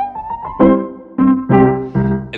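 Spitfire Audio LABS Tape Piano, a sampled upright piano resampled through a vintage magnetic card reader, playing a short run of chords struck about four times. It has a lo-fi, dull tone with little treble.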